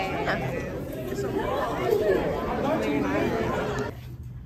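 Chatter of many students' voices overlapping in a school hallway, none of it clear. It cuts off abruptly near the end.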